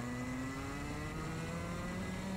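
Rotax two-stroke kart engine running under load, its pitch rising slowly as the kart accelerates.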